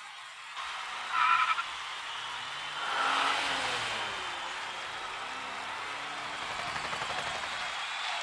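A car engine running and revving, with a short high squeal about a second in and a louder surge around three seconds.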